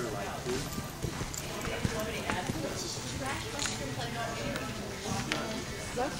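Hoofbeats of horses working on the dirt footing of an indoor arena, irregular sharp ticks and thuds, over a steady murmur of background voices.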